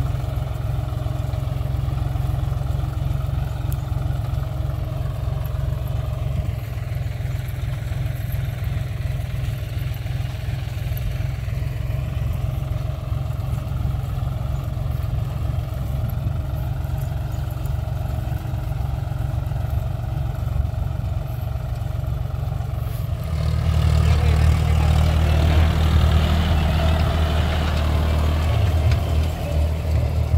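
John Deere tractor's diesel engine running steadily as it pulls a tined seed drill through tilled soil. The engine gets clearly louder about three-quarters of the way through, as the tractor comes close.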